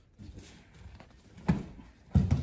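A single heavy thud of a body hitting a judo mat about one and a half seconds in, as the thrower drops onto his back to enter a tomoe nage (circle throw). A few soft scuffs on the mat come before it.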